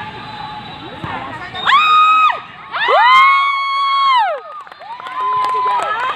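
Football spectators cheering, with a high voice close by letting out three long held yells, the middle one about a second and a half long and dropping in pitch as it ends.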